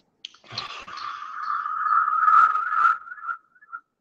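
Loud audio feedback squeal: a steady whistling tone that swells over about two and a half seconds over a hiss, then breaks up into short fading chirps near the end. It comes from a feedback loop as a guest's call audio joins the live stream.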